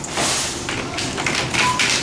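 Plastic shopping basket knocked and clattered as it is taken from a stack on its stand: a few light taps and knocks over noisy store background.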